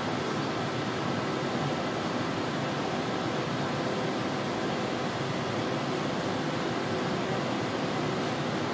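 Steady fan-like hiss and hum of room and equipment ventilation, even throughout.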